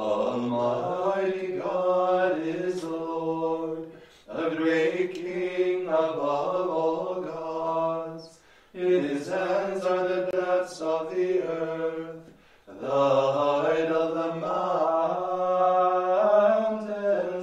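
Unaccompanied liturgical plainchant: voices sing sustained phrases of about four seconds each, with a brief pause for breath between phrases.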